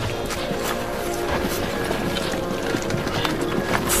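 Background music with held tones, over a run of irregular knocks and clatter from rubble being dug through and shifted by hand.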